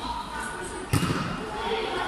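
A single sharp smack of a volleyball being hit during a rally, about a second in, over a background of voices.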